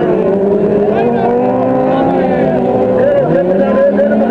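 Several autocross racing car engines running hard on a dirt track, their pitch rising and falling as the drivers work the throttle.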